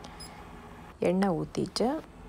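A person speaking briefly about a second in, over low steady room tone.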